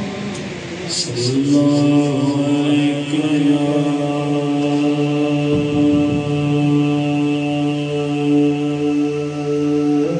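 A young man's voice singing a naat through a microphone and PA, drawing out one long, steady note for about eight seconds.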